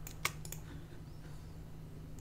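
Three or four quick clicks from the computer's mouse and keyboard in the first half second, then only a faint low steady hum.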